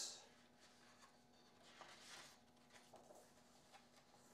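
Faint rustle of a paper picture-book page being turned by hand, with a few soft ticks of the paper settling; otherwise near silence.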